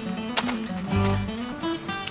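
Background music played on acoustic guitar, with plucked and held notes.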